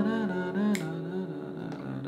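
Acoustic guitar chord, played with a capo on the second fret, ringing out and slowly fading. A man's voice softly carries the song's tune over it without words.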